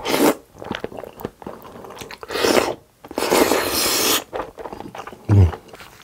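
Mouthfuls of black bean noodles (jjajangmyeon) slurped in close to the microphone: three loud slurps, the last the longest, with wet chewing between them.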